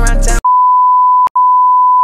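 Hip-hop music cuts off and a single steady electronic beep takes over: the test tone that goes with TV colour bars. It drops out for a moment about a second in, then carries on.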